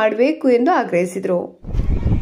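A man speaking to reporters, his voice drawn out in long pitched syllables. About one and a half seconds in it cuts off abruptly, and a low rumbling background with fainter speech takes over.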